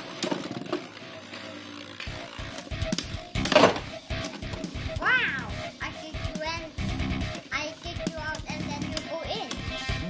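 Background music and a child's voice over two Beyblade spinning tops (Death Diabolos and Mirage Fafnir) spinning and knocking together in a plastic stadium, with a loud sharp burst about three and a half seconds in.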